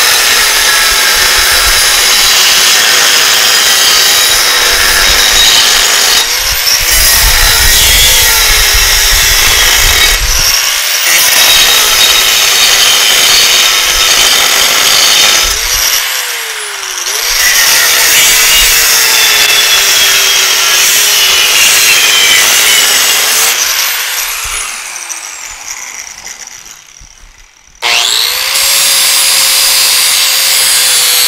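Angle grinder with a thin cut-off wheel cutting steel, its motor pitch dipping and recovering as the wheel bites into the metal. Near the end it is let off and winds down, then starts up again.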